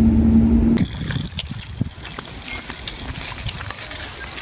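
Steady drone of a moving car heard inside the cabin, cut off suddenly after under a second. Then a much quieter outdoor background with scattered faint ticks and rustles.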